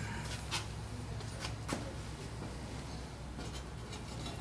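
Faint handling sounds of a spark plug and socket in gloved hands: a few light clicks and rubbing over a steady low hum.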